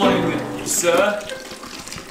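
Water running from a kitchen faucet, with a man's voice briefly over it about halfway in.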